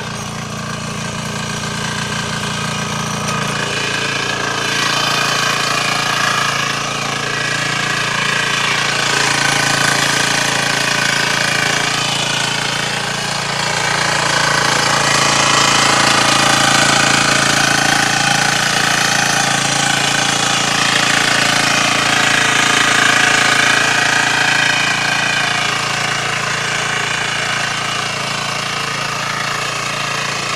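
Small engine of a walk-behind power cultivator running under load as it tills soil. The sound is continuous, swelling and easing slightly in loudness as it works.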